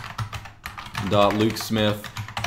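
Computer keyboard typing: a quick run of key clicks as an address is typed in. A man's voice speaks over the second half.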